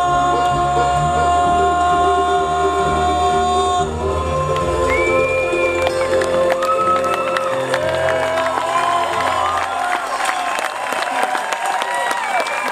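Bluegrass band of fiddles, banjo and guitars holding out the final chord of a waltz, moving to a second long chord about four seconds in as the song ends. From about two-thirds of the way in, audience applause and cheers rise over the last notes.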